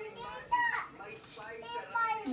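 Toddlers' voices babbling and calling out, with one short high-pitched call about half a second in.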